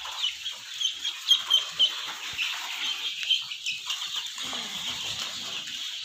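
Young Australorp chicks peeping: rapid, short, high chirps, several a second, loudest about a second and a half in.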